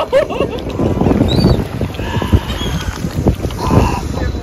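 Wind buffeting the microphone in gusts, with faint distant voices and a brief high chirp about a second and a half in.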